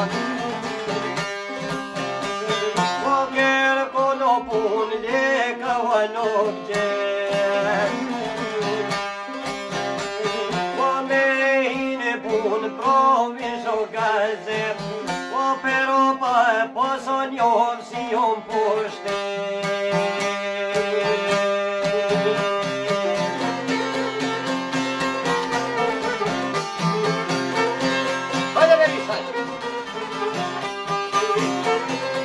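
Live Albanian folk music: a violin plays an ornamented, wavering melody over plucked long-necked lutes, a sharki and a çifteli, which keep up a steady rhythm of plucked notes.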